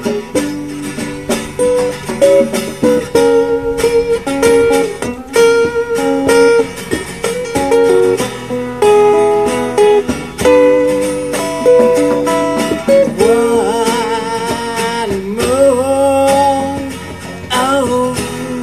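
Live acoustic guitar music: a lead acoustic guitar picks a quick melodic line over a second acoustic guitar's rhythm, with notes wavering and held in the last few seconds.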